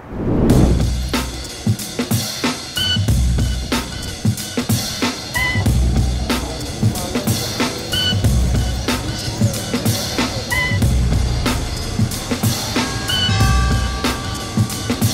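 Background music with a steady drum-kit beat, low bass-drum thuds and short high notes recurring every couple of seconds.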